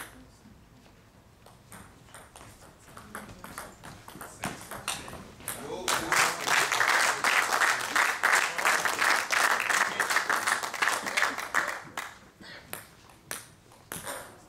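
A table tennis rally: a celluloid ball clicks back and forth off bats and table for about six seconds, the strokes coming faster near the end. When the point ends, spectators break into loud shouting and clapping that lasts about six seconds and then dies down.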